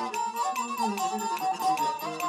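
Instrumental accompaniment of Shaanxi Laoqiang opera: a sliding, ornamented melody over lower string parts, driven by fast, even wooden clacks about five or six a second from a stick striking a wooden block on a bench.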